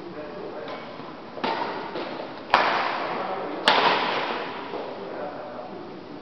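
Badminton racket strikes on a shuttlecock during a doubles rally: a softer hit about a second and a half in, then two sharp, loud cracks about a second apart near the middle, each ringing on in the echo of a large hall.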